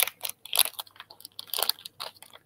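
Crinkling and crackling of a metallized anti-static bag being handled as a small circuit board is pulled out of it, an irregular string of sharp crackles.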